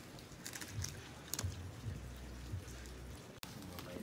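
Faint rustling and scattered light clicks of a handheld phone being handled and moved, with a low rumble in the middle and one sharp click near the end.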